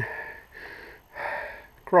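A cyclist's heavy breathing while pedalling: two hissy breaths, one at the start and one about a second in.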